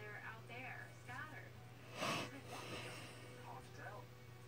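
Television dialogue playing through the set's speakers, with a short, loud burst of noise about two seconds in that is the loudest thing heard, over a low steady hum.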